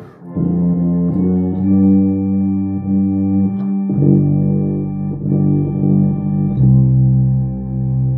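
Tuba playing a slow hymn in its middle register along with an organ: long held notes, with the low note changing every few seconds.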